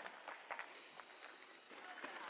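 Very quiet outdoor ambience with a few faint, soft ticks.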